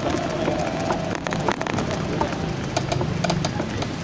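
Small vehicle engine running steadily, heard from on board while moving, with road and wind noise and scattered clicks and rattles.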